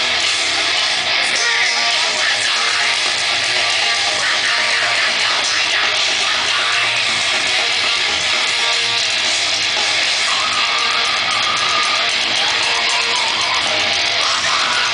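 A deathcore band playing live at high volume: distorted electric guitars, bass and drums in one dense, unbroken wall of sound.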